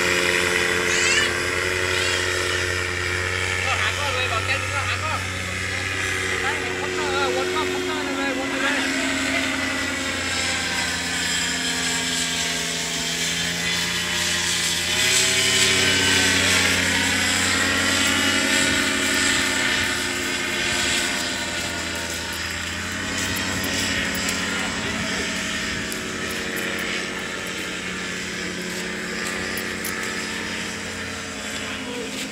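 Paramotor engine and propeller droning overhead in flight, its pitch sliding down and back up near the middle as it passes and changes throttle.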